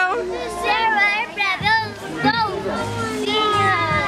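High-pitched voices with gliding, sometimes held pitch over background music.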